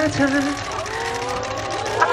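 A young man singing a cappella into a handheld microphone: a short wavering held note, then a long note sliding gently upward. A steady low hum runs underneath and stops near the end.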